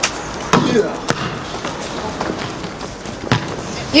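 Basketballs bouncing on an outdoor court: a few separate, irregular thumps of ball on hard ground, with players' voices in the background.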